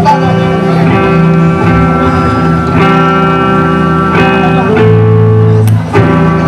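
A live band's guitars, electric and acoustic, strumming sustained chords that ring out, with a new chord struck every one to two seconds over a steady low note.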